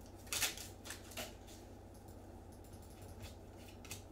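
Plastic wrapper of a baseball card pack crinkling as it is torn open, a few short faint rustles in the first second and a half, then quieter handling with a small click near the end.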